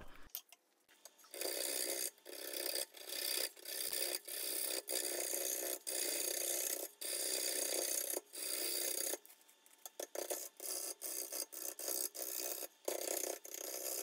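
Bowl gouge cutting a spinning green black walnut blank on a wood lathe while it is roughed round: a run of short rasping cuts, each about a second long with brief breaks between, lighter and choppier in the last few seconds. These are small pivot cuts used to rough out the out-of-round blank.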